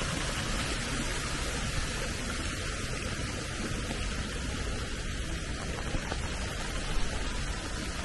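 Steady rain, an even hiss with no pattern in it.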